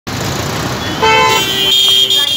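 Road traffic noise from a jam of idling vehicles. About a second in, vehicle horns start honking: a short blast overlapped by a second, higher-pitched horn that keeps sounding.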